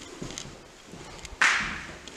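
Footsteps of a person walking across the floors of an empty house, heard as faint, irregular soft knocks. About a second and a half in there is one sudden rush of noise that fades over about half a second.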